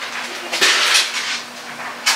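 Dishes and kitchenware clattering as they are handled at a kitchen sink. The loudest stretch runs from about half a second to just past one second, with quieter knocks after it.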